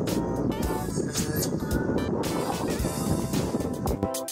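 Background music with a beat laid over the steady low noise of a motorboat running across open water, its engine mixed with the rush of wind and water.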